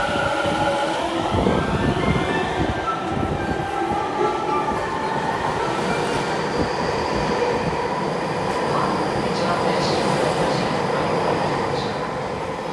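Tobu 50070 series electric train pulling out of an underground station: its inverter-driven traction motors whine upward in steps over the first few seconds as it accelerates. This gives way to a steady rumble of wheels on rail as the cars run past.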